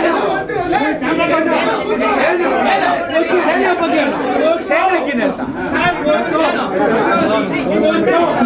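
Speech only: several men talking loudly over one another in a heated exchange.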